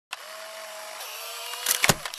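Record-player sound effect: a steady mechanical whirr with hiss and a faint wavering hum, then a burst of loud clicks and crackle near the end.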